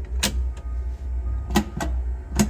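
Three sharp clicks of a truck's dash headlight switch being worked, one early and two close together near the end, over a steady low rumble.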